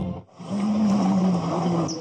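Film soundtrack played back in a lecture room: the music breaks off, and after a brief gap a single low, held pitched sound runs for about a second and a half, rising slightly and then falling.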